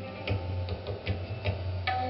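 Indian fusion music: sharp tabla strokes, about seven in two seconds and unevenly spaced, over a low steady drone.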